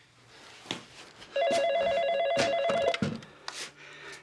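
Landline telephone ringing once: a trilling electronic ring about a second and a half long, starting about a second and a half in.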